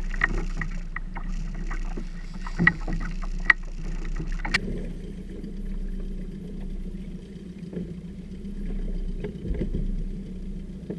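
Water slapping and splashing against a small plastic tender's hull, with sharp splashes and knocks in the first few seconds, over the steady low hum of an idling outboard motor.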